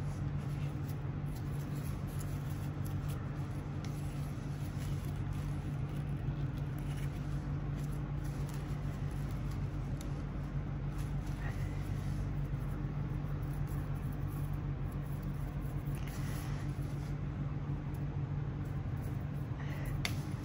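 A steady low background hum, with faint rustles and light taps as grosgrain ribbon bows are handled and pressed together.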